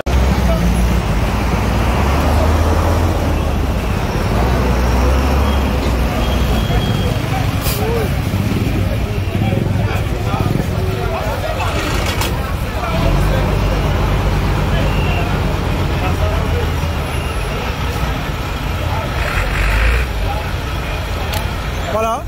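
Vehicle and road rumble heard from the open back of a moving truck: a loud, steady low drone with uneven surges in the bass, and faint voices underneath.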